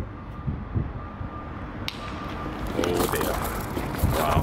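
A piece of brick dropped from a rooftop hits the ground far below: one sudden, distant crack about two seconds in, followed shortly after by a man's voice exclaiming.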